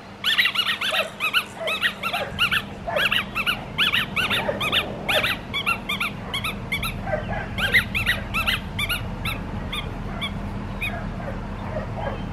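Australian Shepherd puppy yipping in a long run of short, high-pitched yips, several a second, thinning out after about six seconds and stopping near the end.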